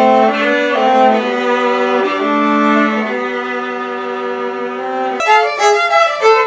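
Two violins playing a slow duet in long held notes. About five seconds in, the sound cuts abruptly to a livelier passage of shorter, brighter notes.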